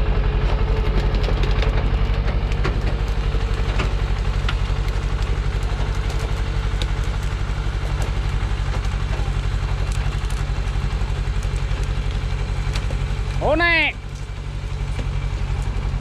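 A Thaco truck's diesel engine idling steadily with a low, even throb, with faint knocks from acacia logs being stacked on the load. A short shouted call comes near the end.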